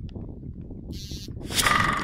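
Wind rumbling on the microphone, with a loud, harsh, brief sound carrying a couple of held tones in the last half second.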